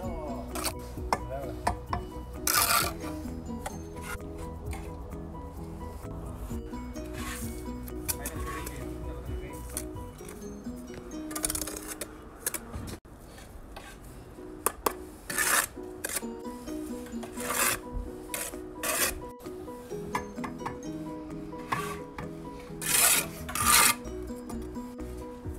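Steel brick trowel scraping and spreading mortar on brick, in short scrapes every few seconds, over background music.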